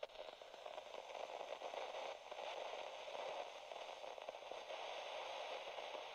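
Faint static: an even hiss with light crackling, the noise of an analog video feed with no signal.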